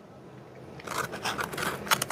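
Close-miked eating and food-handling noises: after a quiet first second, a quick irregular run of crackles and rustles.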